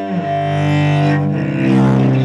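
Solo cello played with the bow: a low note is held while a second note sounds above it, the upper note changing pitch about a second and a half in.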